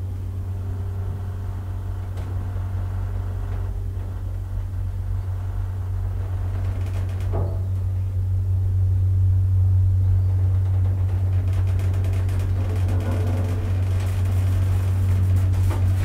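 Kristianstad Hiss & El hydraulic elevator running as the car travels between floors: a steady low hum from its drive, growing louder about halfway through. A click comes about seven seconds in, and a clunk at the very end as the car arrives.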